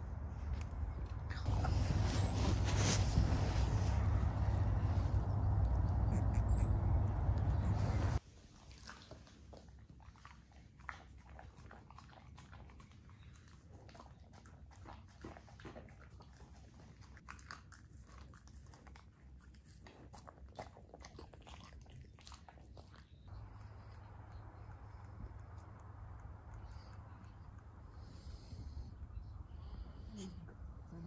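A loud steady rushing noise for the first eight seconds or so that cuts off suddenly, then a husky eating from a stainless-steel bowl: quiet chewing and crunching with many small clicks. Near the end, a low steady hum.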